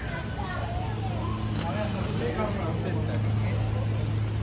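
Indistinct voices of people talking nearby, over a steady low hum that grows stronger about half a second in.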